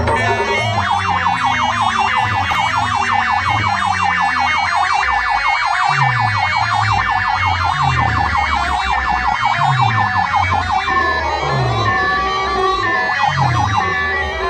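Loud dance music from a DJ sound system of stacked horn loudspeakers: a rapid, siren-like warbling synth over repeated falling bass notes. About eleven seconds in, the warble gives way to a slower rising-and-falling melody.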